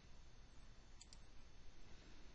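Near silence: faint steady hiss of room tone, with one small click about a second in.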